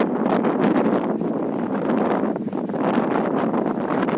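Wind buffeting the microphone on an open seafront: a loud, steady rushing noise that swells and eases every couple of seconds.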